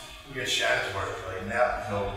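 A man speaking to a room in a lecture, his words indistinct.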